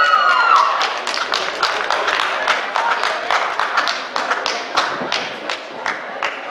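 A loud shout of celebration after a goal, then scattered hand clapping from a few people: irregular single claps, several a second, fading toward the end.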